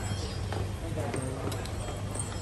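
Footsteps of shoes on a hard floor, a scatter of short sharp steps, over a steady low hum and faint voices in the background.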